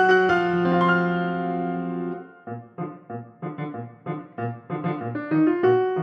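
Instrumental music led by piano. A held chord rings and fades for about two seconds, then a steady pulse of short repeated notes begins, each with a low bass note under it.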